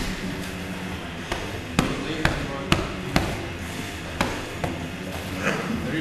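Sharp thuds and slaps of bodies and gloved hands against foam mats during ground grappling in MMA sparring, about half a dozen separate impacts spread through the middle of the stretch.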